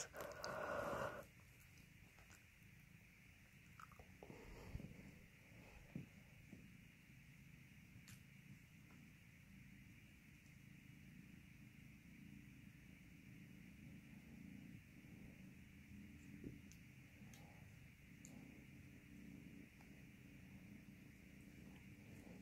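Faint, steady purring of kittens at play: a low rumble, with a few soft knocks and scuffles of the play early on.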